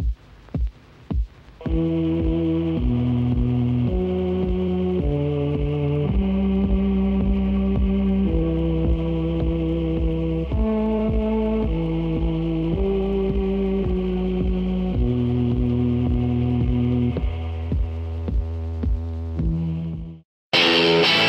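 Horror-film opening-title music: a steady throbbing pulse about twice a second. From about two seconds in, sustained droning chords play over it and change every second or so.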